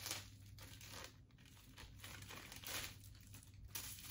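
A thin plastic packaging bag and paper wrapping crinkling in several short rustles as the bag is opened and the wrapped bangle is taken out.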